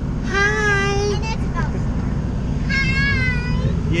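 Two drawn-out, high-pitched vocal calls in a child's voice, the second much higher than the first, over the steady low rumble of the moving pickup truck in the cab.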